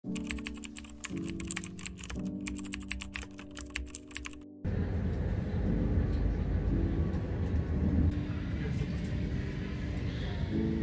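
Lo-fi music with a fast run of sharp, keyboard-like clicks. A little under halfway through it cuts suddenly to the loud, steady low rumble of an underground train running, heard from inside the carriage, with the music continuing faintly underneath.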